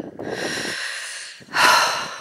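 A hiker breathing hard close to the microphone, out of breath from the uphill walk: two breaths, a long fading one, then a louder one about one and a half seconds in.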